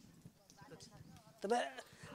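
A short pause in a woman's speech, with only faint background voices and rustle, then her voice starts again about one and a half seconds in.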